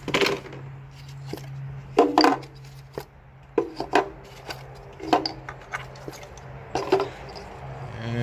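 Ignition coils being pulled out of the spark-plug wells and laid down on the engine: an irregular string of sharp plastic-and-metal clicks and knocks, a few with a short ring, over a low steady hum.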